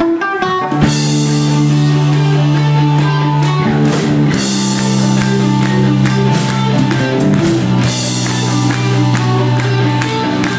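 Live rock band playing an instrumental passage on electric guitars, bass guitar and drum kit. It opens with a quick falling run of notes, then settles into held chords over a steady bass note, with regular drum and cymbal strikes.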